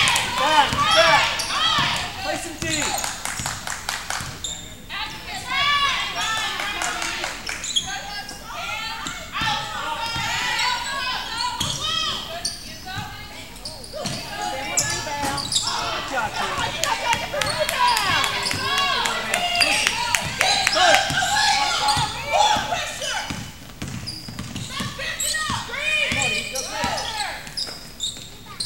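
A basketball being dribbled on a hardwood court, with sneakers squeaking as players run and cut, and voices calling out.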